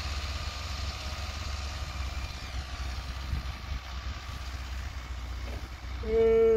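Mahindra Arjun Novo tractor's diesel engine running steadily while pulling a tined implement through ploughed soil: a constant low rumble.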